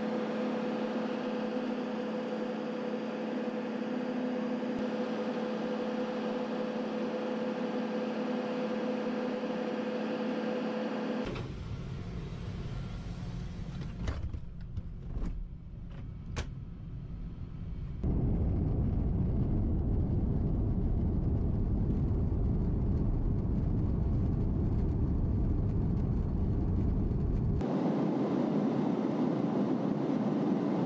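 Aircraft noise from an RAF Voyager tanker. For about the first eleven seconds there is a steady hum with two held tones. It then changes suddenly to a low cabin rumble with a few sharp clicks, and from about eighteen seconds to a louder, steady low rumble.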